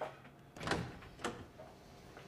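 A door being opened: a click of the latch, a short swish of the door a little over half a second later, and another click just after a second.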